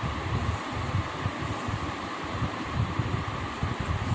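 Steady background noise of a running electric fan: an even hiss with an unsteady low rumble.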